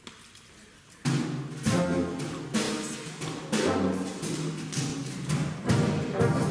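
Wind band of brass, saxophones and drum kit striking up about a second in: full chords punctuated by sharp drum hits.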